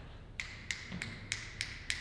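About six light, sharp clicks, roughly three a second, from hand-held equipment being handled.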